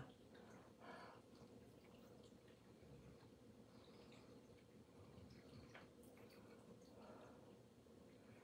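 Near silence, with faint wet mouth clicks from a person chewing a mouthful of food.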